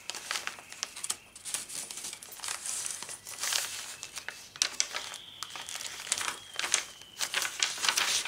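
Paper rustling and crinkling as hands handle a paper tag and the layered pages of a thick handmade junk journal, ending with a page being turned: irregular crisp rustles and small clicks.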